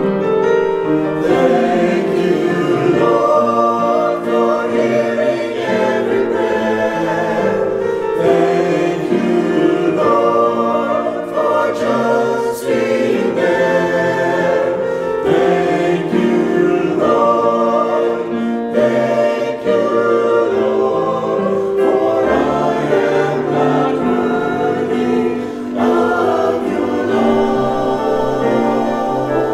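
A church choir of mixed men's and women's voices singing together, continuously.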